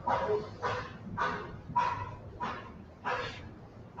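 A handheld eraser wiped back and forth across a whiteboard in about six quick rubbing strokes, one every half second or so.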